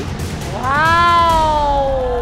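A single high voice giving one long drawn-out exclamation that rises briefly and then slowly sinks in pitch, in reaction to a large prize total.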